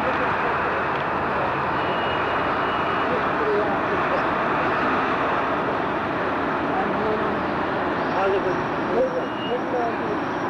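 A steady, even background noise at a constant level, with faint voices coming through here and there, more of them near the end.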